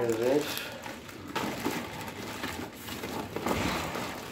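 Clear plastic bag crinkling and rustling as a pool filter pump wrapped in it is handled and packing is rummaged in a cardboard box. The crinkling becomes busier from about a second and a half in.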